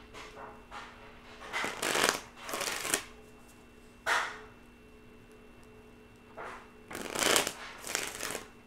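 A deck of tarot cards being shuffled by hand in irregular bursts, loudest about two seconds in and again near the end, over a faint steady hum.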